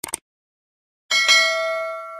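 Subscribe-animation sound effects: a quick double mouse click at the start, then about a second in a bright notification bell chime rings out with several tones and slowly fades.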